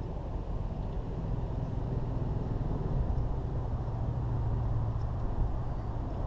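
A low, steady rumble of a distant engine, with a hum that swells from about halfway through and eases off near the end.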